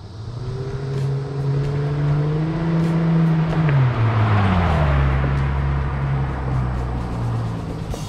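Chrysler Prowler's 3.5-litre aluminium V6 driving past: the engine note builds as the car approaches, drops in pitch as it goes by about four seconds in, and carries on as it drives away.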